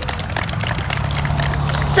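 Road traffic passing on the highway behind: a vehicle's low engine hum and tyre noise, growing louder toward the end as it comes by.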